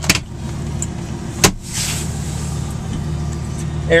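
Steady low hum of the 1999 Ford F-350's Triton V10 engine idling, heard from inside the cab, with one sharp click about a second and a half in.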